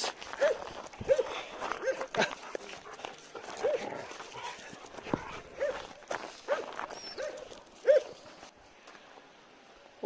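A dog giving short barks, about ten of them spread over some eight seconds, with footsteps on gravelly ground.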